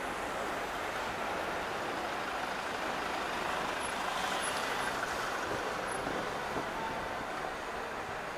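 Street traffic: a van drives past close by, its engine and tyre noise a steady haze that swells slightly around the middle.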